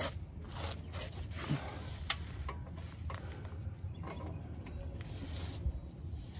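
Faint scraping and clicking of a claw-type oil filter wrench being worked on a tight spin-on oil filter, with scattered small knocks.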